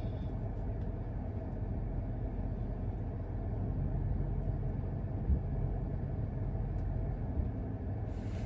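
Steady low rumble inside a car's cabin from the engine idling, with a couple of faint clicks.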